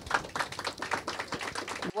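Audience applauding: many hands clapping in a quick, irregular patter that stops abruptly near the end.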